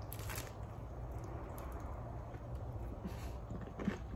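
Faint bite into a crisp pepperoni pizza chaffle near the start, followed by quiet chewing with a few small clicks and crunches.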